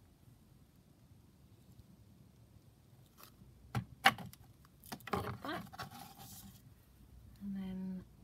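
Hands working fabric glue and lace trim on a paper pocket at a craft desk: mostly quiet, with two sharp taps about four seconds in and a stretch of handling after them. A short hummed note comes near the end.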